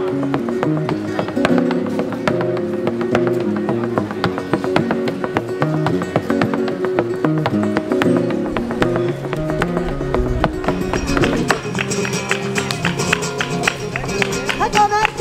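Flamenco music on acoustic guitar, played fast with many sharp percussive accents.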